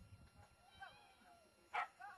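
A dog gives a single sharp bark near the end, over faint calling voices.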